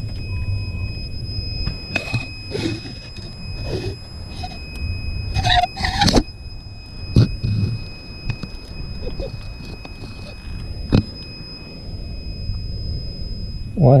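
Hands working wires and a sensor connector in a tractor's wiring harness: rustling and scattered clicks over a steady low rumble and a faint high whine. A louder squeaky scrape comes about six seconds in, and sharp clicks come near seven and eleven seconds.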